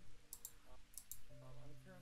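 Two pairs of short, sharp clicks, one pair about a third of a second in and one about a second in, over faint steady low tones.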